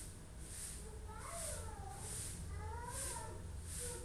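Faint meowing of a domestic cat: two drawn-out meows that rise and fall, one a little over a second in and another about three seconds in. Under them run a steady low hum and a soft hiss that pulses at an even pace.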